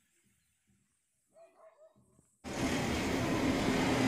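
Near silence, then about two and a half seconds in a loud steady noise with a low engine hum cuts in abruptly: an L&T-Komatsu hydraulic excavator's diesel engine running while it works the refuse heap.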